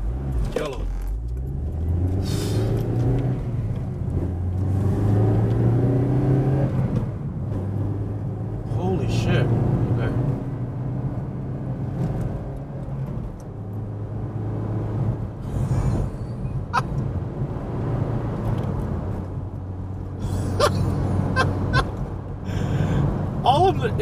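2008 Honda Civic Si's four-cylinder engine, with an aftermarket header and cat-back exhaust, heard from inside the closed cabin as the car pulls away. The engine note climbs for several seconds, drops about seven seconds in at a gear change, then holds steady while cruising.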